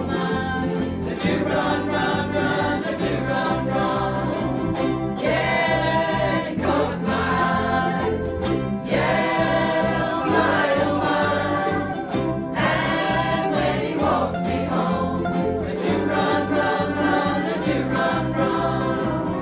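Live ukulele band strumming a steady up-tempo song with several voices singing together, over a bass line that moves in even notes.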